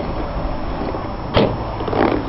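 A steady background rumble with a single sharp knock about one and a half seconds in, and a fainter knock near the end.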